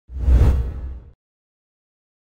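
Whoosh sound effect with a deep low rumble, swelling quickly and fading away within about a second.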